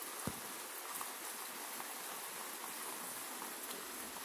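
Steady background hiss with no other sound, apart from one faint click shortly after the start.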